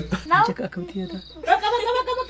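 A high-pitched, wordless voice with quick sliding rises in pitch, then a longer held note near the end.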